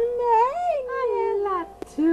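A woman's voice crooning a wordless, sliding line that rises and then falls away, with a cat-like warble. A brief click comes near the end.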